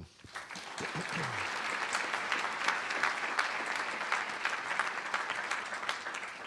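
Audience applauding, building up over the first second, holding steady, then tapering off near the end.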